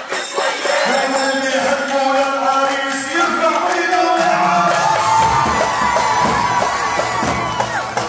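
Arab wedding zaffe music: a man singing long, ornamented lines over a cheering crowd, with drums and a bass line coming in about four to five seconds in.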